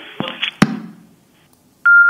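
Telephone line on air: crackle and sharp clicks as the line opens, then a steady electronic beep starts near the end, with faint clicks through it.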